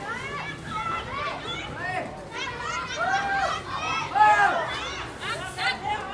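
High-pitched voices of women rugby players and spectators shouting and calling out over one another, with the loudest shout about four seconds in.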